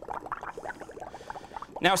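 Gas from a balloon bubbling through a tube into a bowl of soapy water, an irregular run of small bubbling pops. A man's voice begins near the end.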